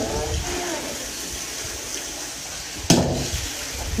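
Water running steadily through a monjolo, a water-powered wooden grain pounder, with one sharp wooden knock from the machine about three seconds in.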